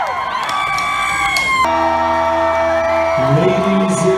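Concert crowd cheering and whooping, cut off abruptly about a second and a half in by the band's amplified instruments holding a steady chord over a low drone, with more notes joining near the end.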